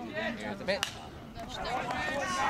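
A baseball bat striking a pitched ball: one sharp crack about a second in, with faint voices around it.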